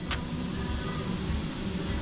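Steady low hum of operating-theatre equipment and ventilation, with one short click just after the start.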